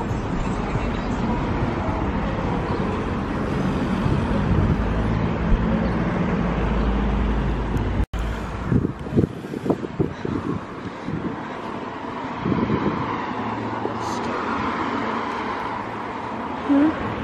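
Road traffic: cars passing on a nearby road, a steady rumble with some wind on the microphone. About halfway through the sound cuts abruptly, then a few short knocks and a quieter steady background follow.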